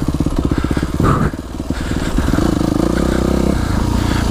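Yamaha YZ250F's 250 cc four-stroke single-cylinder engine running under way, putting along at low revs at first. The revs rise about halfway through and ease off again near the end.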